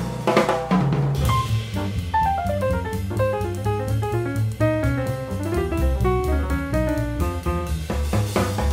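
Background music with a drum kit, a bass line and quick rising and falling runs of notes.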